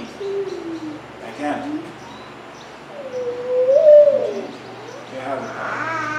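A bird cooing: smooth low hoots, with one longer call about halfway through that rises and then falls, between a few short bits of a man's speech.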